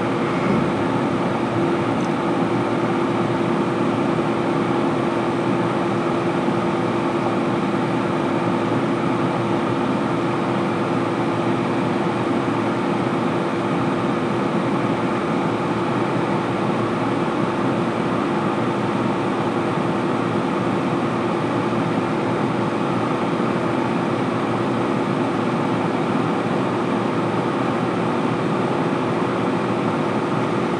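Steady hum and whir of a series 485 electric train's onboard equipment, such as its air conditioning, heard inside the passenger car while the train stands at a station, with one constant low tone under the noise.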